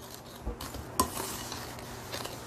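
Wooden spoon creaming sugar and oil by hand in a glass mixing bowl: a steady scraping stir, with a sharp knock about a second in.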